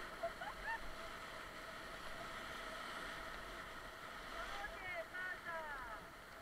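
Steady rush of whitewater rapids around an inflatable raft. A few short, faint voice calls come near the end.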